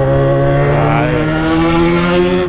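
Yamaha XJ6's 600 cc inline-four engine through a straight-pipe exhaust with no muffler, pulling hard in one gear under acceleration, its pitch rising steadily.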